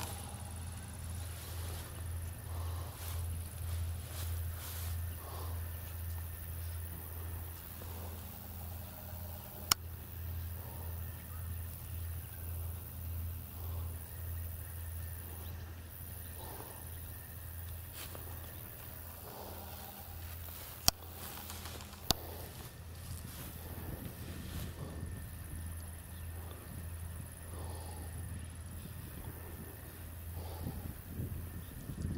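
Long freight train of hopper cars passing at a distance: a steady low rumble that pulses evenly. Three sharp clicks cut in, one about a third of the way in and two close together about two-thirds in.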